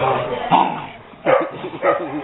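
Dog barking in short play barks, about three in quick succession, while it tugs on a braided rope tug toy.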